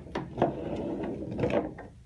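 Plastic knee-replacement bone models being picked up and handled on a wooden tabletop: a few sharp clicks, then about a second of rubbing and clattering that fades near the end.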